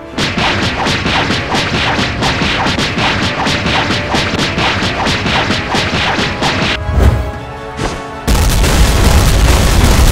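Animated fight sound effects over trailer music: a rapid flurry of punch and hit impacts, a heavy boom about seven seconds in, then a loud, sustained explosion rumble over the last two seconds.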